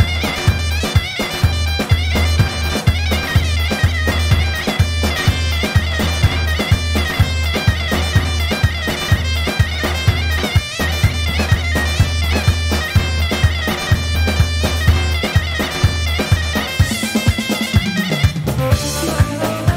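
Live band dance music with a loud, reedy, bagpipe-like lead melody over a steady drum beat and a low drone, typical of Assyrian folk dance music. The drone drops out near the end.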